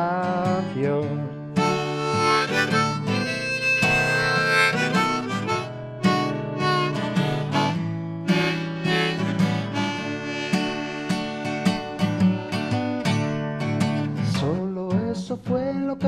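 Harmonica solo played from a neck rack over a strummed acoustic guitar, in an instrumental break between sung verses.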